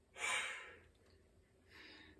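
A person sighing once: a short breathy exhale of about half a second, with a fainter breath near the end.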